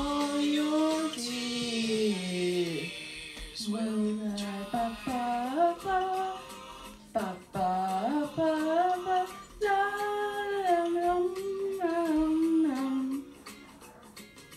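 A woman singing a wordless, hummed melody into a handheld microphone in a small room, the notes sliding and held across several phrases; the singing stops about thirteen seconds in.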